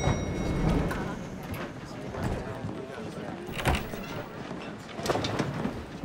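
An elevator chime rings once as the doors open, fading within about a second, followed by low room noise with a couple of soft knocks.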